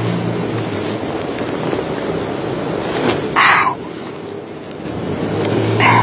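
A steady low motor hum that eases off for about a second and a half after four seconds in, then comes back. About three and a half seconds in there is a short vocal sound from a person.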